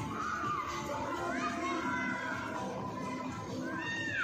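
Children's high-pitched shouts and calls, several short rising-and-falling cries, over a crowd's chatter with music playing underneath.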